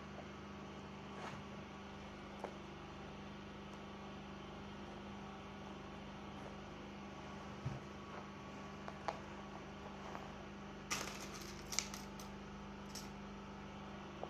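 Quiet room with a steady electrical hum, over which hands handle and smooth fabric on a table, giving a few faint taps and rustles, with a short cluster of rustles near the end.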